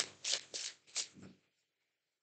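Tarot cards being shuffled by hand: a quick run of about five short, crisp card rustles over the first second or so.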